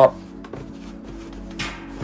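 Quiet background music with steady held notes, and one short breathy hiss near the end.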